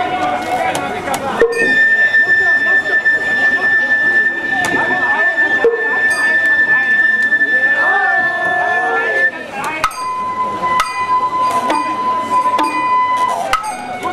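Sawara-bayashi festival music from the float: a bamboo flute holds one long high note, then a lower held note near the end, over voices and sharp clicks.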